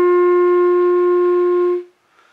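Clarinet holding one long, steady note of a slow melody; the note stops near the end.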